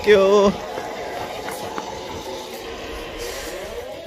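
A voice says "thank you", then steady outdoor background noise runs on with no distinct events.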